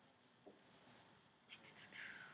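Near silence: faint room tone in a small room, with one faint click about half a second in and a few faint quick clicks near the end.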